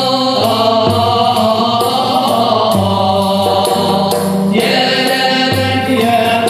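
Moroccan Andalusian music played live: several voices singing a melody together over bowed strings (violins held upright on the knee and a cello) and an oud, with held notes over a moving bass line.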